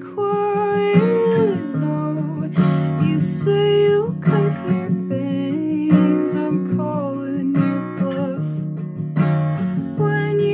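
Acoustic guitar strummed in a slow, steady pattern, with a woman's voice carrying a melody over it and holding notes that bend and waver.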